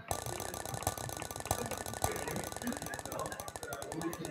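Spinner-wheel app's ticking sound effect: a fast, even run of clicks that starts suddenly as the wheel is set spinning, one tick for each segment passing the pointer.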